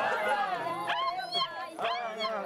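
A group of women's voices calling out and singing together, broken by high whoops that sweep sharply upward twice.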